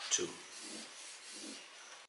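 Felt-tip marker rubbing across paper as the answer is written out and underlined twice, a faint scratchy scraping.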